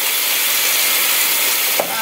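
Water from a kitchen faucet running steadily into the sink to rinse pork bones, with a short knock near the end.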